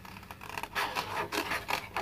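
Small scissors cutting through black card, a run of short irregular snips that come closer together in the second half.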